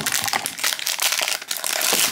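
Foil blind-box pouch crinkling and crackling in the hands as it is handled and pulled open, a rapid, irregular run of crackles.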